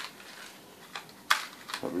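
Hands handling a small clear plastic bag: a few short crinkles and clicks, the sharpest about a second and a quarter in.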